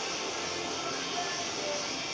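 Naturally aspirated Cummins 5.9 diesel idling steadily on its first run, heard from beside the open engine bay.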